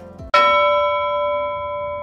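A single bell-like chime struck once about a third of a second in, then ringing on and slowly fading.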